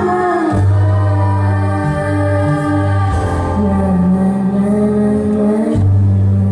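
Live band music: voices singing over held low bass notes that change pitch a few times.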